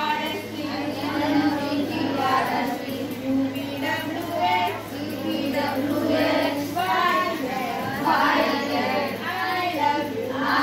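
A group of voices chanting together in a sing-song rhythm, phrase after phrase: a literacy lesson recited in unison.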